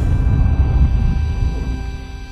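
Intro-sting sound effect: a deep, rumbling whoosh that fades away over about two seconds, with a faint sustained tone above it.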